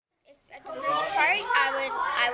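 Dead silence for about the first half second at an edit cut, then a young girl talking.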